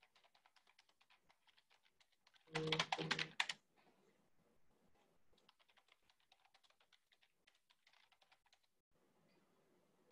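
Faint computer keyboard typing, a quick irregular patter of key clicks that stops near the end, with a louder buzzy burst of clatter lasting about a second early in the typing.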